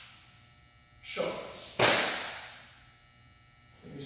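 Two sudden swishing snaps about half a second apart, the second louder and ringing briefly in the room: a taekwondo uniform snapping with sharp movements of a form.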